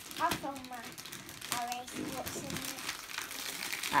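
Gift-wrapping paper crinkling and tearing in irregular rustles as a wrapped box is unwrapped by hand, with short bits of a child's voice.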